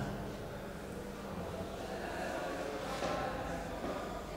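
Marker pen drawing on a whiteboard: short scratchy strokes, with a few higher squeaks around three seconds in.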